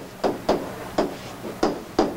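A handful of short, sharp, irregularly spaced taps of a pen or stylus against the writing surface as a word is handwritten, with quiet room noise between them.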